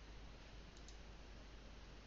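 Near silence: room tone, with a faint pair of clicks a little under a second in.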